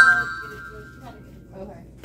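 Card payment terminal chiming as a card is tapped on it: a quick run of rising tones that ring on for about half a second, the signal that the card has been read.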